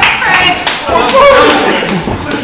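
Boxing gloves landing in a few sharp, irregular smacks during sparring, over loud shouting and cheering voices.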